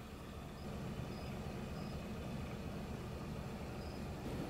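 Faint steady low hum and hiss of outdoor night background, with a few faint, short, high chirps about a second apart.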